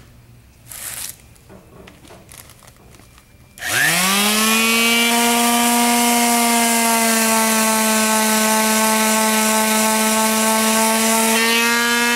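Electric palm sander switched on about three and a half seconds in, its motor spinning up with a rising whine and then running at a steady pitch as it sands down high spots of cured WoodEpox epoxy filler on a wooden window sash.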